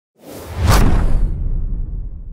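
Logo intro sound effect: a whoosh swelling into a sharp hit, followed by a deep low rumble that slowly fades.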